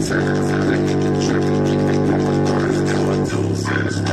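A bass-boosted hip-hop track played loud through a small bare woofer driver: a heavy, held bass note under a beat. The bass drops to a lower note a little past three seconds in.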